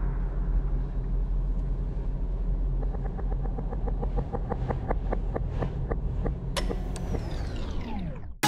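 Cinematic intro sound design: a deep, steady rumbling drone with a run of pitched ticks, about four or five a second, from about three seconds in. About six and a half seconds in comes a sharp hit whose ring falls in pitch before everything fades out near the end.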